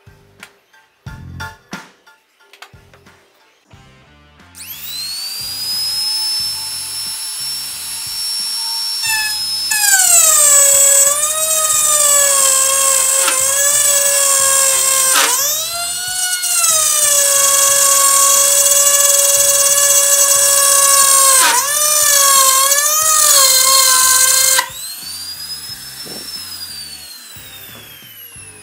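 Dongcheng DMP02-6 wood trimmer (compact router) switched on about four seconds in, its motor spinning up to a high whine. Its pitch drops as the bit cuts along the board's edge and dips briefly twice more under load. It is switched off near the end and winds down with falling pitch.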